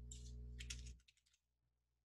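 Computer keyboard typing: a quick run of key clicks over a steady low hum, cut off about a second in.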